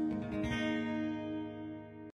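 Acoustic guitar chords strummed and left to ring, fading toward the end as the song closes.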